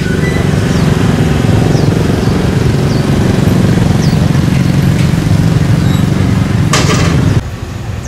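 Steady engine noise of motorbikes and cars moving in traffic, a dense low rumble that cuts off abruptly near the end.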